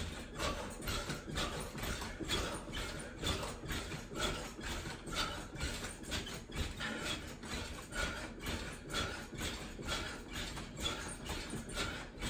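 Cellerciser mini-trampoline taking repeated landings from a person bouncing and twisting on it: an even rhythm of soft thuds and mat-and-spring creaks, about two a second.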